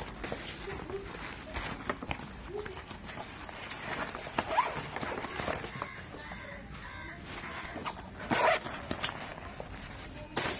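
A nylon laptop bag being handled against a cardboard box, making fabric rustling with light scrapes and taps. There is a louder burst of rustling about eight and a half seconds in.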